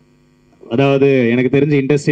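A brief pause with a low steady hum from the sound system, then a man's voice through a handheld microphone comes back in loudly, drawing out a long word, about two-thirds of a second in.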